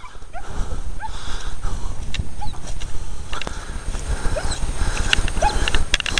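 Wind rumbling on a hand-held microphone outdoors, with scattered footstep and handling knocks on grass and a few faint, short rising chirps.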